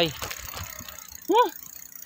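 A bicycle rattling and ticking as it rolls over a rough dirt road. About a second and a half in there is one brief high call that rises and then falls.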